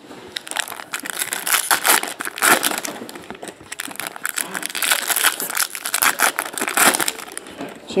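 Foil trading-card pack wrappers crinkling as packs are handled and opened by hand: a dense run of crackles and rustles that comes in bunches. A voice starts at the very end.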